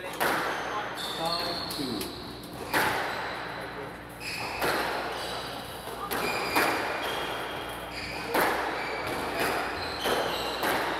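A squash ball is struck hard about every two seconds during a rally, each hit echoing in the court. Short shoe squeaks come off the wooden floor between shots.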